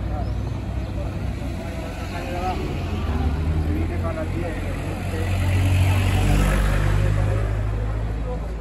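A car driving past on the street, swelling to its loudest about six seconds in and then fading, over a steady low rumble and the background chatter of people waiting in a queue.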